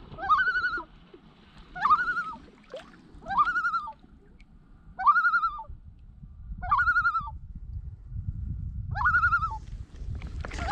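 Common loon giving its tremolo call over and over: six short quavering calls, about one every second and a half, each rising quickly into a wavering held note.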